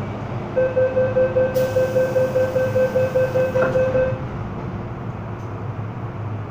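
MTR M-Train door-closing warning: a rapid beeping tone, about four beeps a second for about three and a half seconds. A hiss joins it partway through, and a knock comes near the end as the doors shut, over the train car's steady hum.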